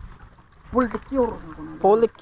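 A person's voice: a few short syllables of speech after a brief near-quiet start.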